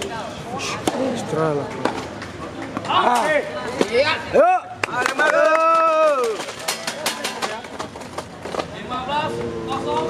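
Indistinct voices of people at the court talking and calling out, with one long drawn-out call about five seconds in, and a few light taps scattered through.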